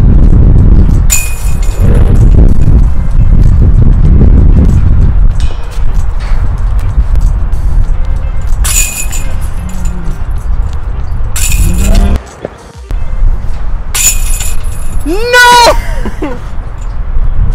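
Disc golf putters hitting the chains of a metal basket about four times, each a short metallic jingle, over a constant low rumble. Near the end a voice rises and falls in a drawn-out cry.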